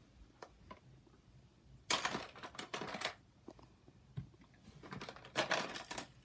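Handling noise of makeup and a handheld phone: two bursts of quick clicks and rustles, about two seconds in and again near the end.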